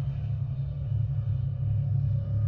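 A steady, deep rumble from the soundtrack of the closing logo animation.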